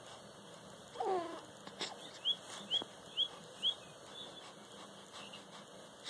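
A young baby gives one short coo that falls in pitch, about a second in. Then come four quick, high, rising chirps of a bird, about two a second.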